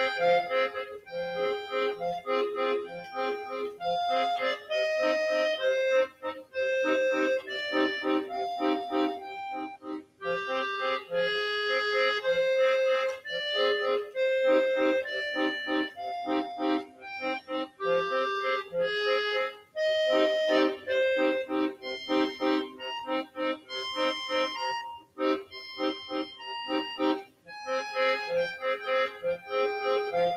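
Solo piano accordion playing a melody over chords, with short, regular bass notes underneath and a few brief breaks in the phrasing.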